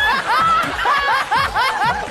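People laughing hard, the laughter coming in quick repeated pulses.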